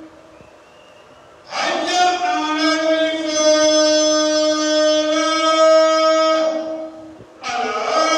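A man's voice chanting long held notes at a nearly steady pitch. After a quiet start, one note is held for about five seconds, then another begins near the end.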